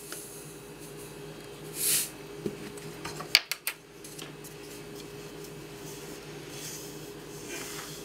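A steady low electrical hum under quiet mixing of flour and salt in a plastic bowl. A brief soft hiss comes about two seconds in, and a few sharp clicks of a spoon against the bowl come around the middle.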